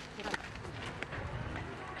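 Booted footsteps on sandy dirt as someone strides away, a series of faint irregular thuds and scuffs over outdoor background.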